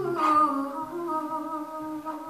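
A woman humming a wordless melody line in long held notes that glide from one to the next, over a low bass that pulses in a steady rhythm.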